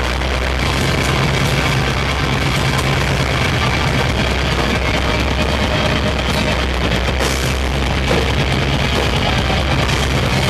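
Hardcore metal band playing live, with distorted electric guitars over held low bass notes in a loud, dense, unbroken wall of sound.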